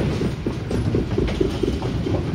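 Bowling ball rolling down the lane toward the pins: a steady low rumble with small irregular knocks.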